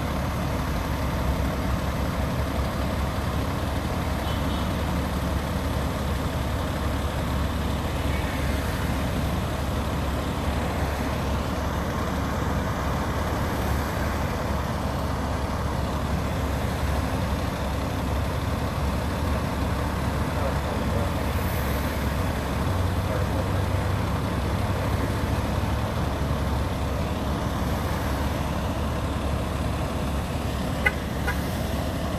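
Steady low rumble of idling diesel fire engines.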